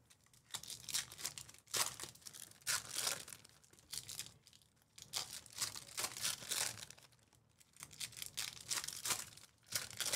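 Foil trading-card pack wrappers being torn open and crinkled in the hands, in a string of short crackling bursts with brief pauses between them.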